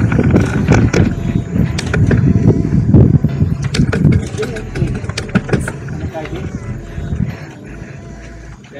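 Mountain bike rolling over a rough concrete and dirt road: a heavy low rumble of road and wind noise, with many sharp clicks and rattles from the bike. It eases off toward the end.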